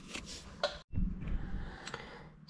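Faint rustling and light clicks of a cardboard template being handled, which cut off abruptly just under a second in; after that, only faint low room noise with light handling.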